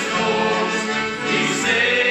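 A small mixed choir of young men and women singing a Christian song together, several voices holding long sung notes through microphones.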